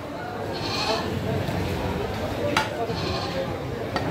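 Heavy meat cleaver chopping goat meat on a wooden log block: one sharp chop about two and a half seconds in and another at the very end. Voices and a bleat-like call are heard under it.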